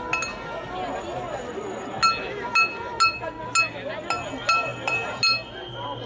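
A small metal saucepan beaten with a wooden stick, giving ringing metallic clanks: one at the start, then a run of about eight strikes roughly two a second from about two seconds in. Crowd voices chatter underneath.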